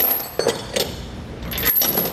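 Half-inch steel chain links and the steel hooks of a red Titan Chain lever-type load binder clinking against each other as the binder is hooked onto the chain. Several sharp metallic clinks, with a quicker run of them near the end.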